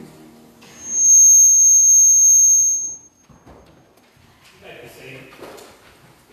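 A loud, high-pitched steady squeal of sound-system feedback, held for about two seconds and cut off suddenly. Faint murmuring voices and shuffling follow.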